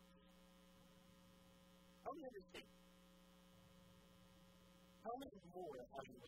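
Steady low electrical mains hum, with two short snatches of a man's speech: one about two seconds in and one near the end.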